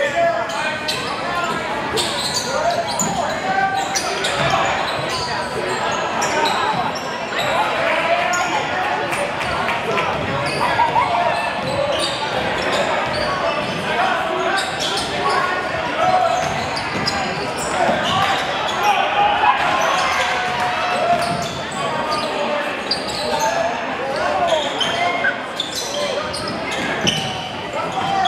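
Basketball game in play in a reverberant school gym: a basketball bouncing on the hardwood floor amid constant calls and shouts from players and spectators.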